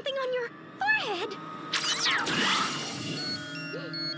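Cartoon soundtrack: short vocal exclamations over background music, then a sweeping whoosh with falling tones about two seconds in, and stepped electronic beeping tones near the end.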